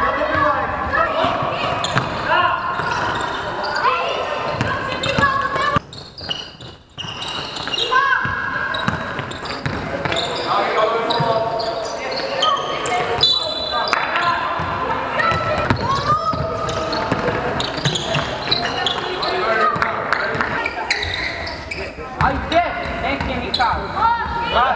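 Game sounds in a sports hall: a basketball bouncing on the court floor while players call out and shout during play.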